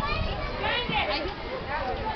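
Several children's voices shouting and chattering over one another, with high squeals about a second in, as from children riding a swinging amusement ride.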